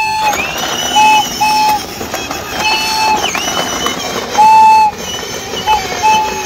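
A toy whistle blown in about six toots of one steady pitch, mostly short, with the longest and loudest a little past the middle. Beneath them is the continuous rolling rattle of a battery-powered ride-on toy train moving over paving.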